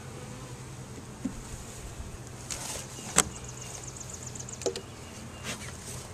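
Honey bee colony buzzing steadily from an open hive. About three seconds in there is a brief scrape and a sharp knock as a wooden frame is set back into the box.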